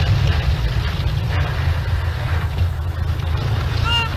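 Tracked armoured vehicle running, a steady low engine and track rumble with no change in pitch.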